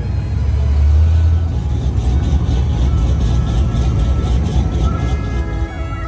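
A car engine running close by: a deep low rumble that swells about half a second in and is loudest around a second in, with background music over it.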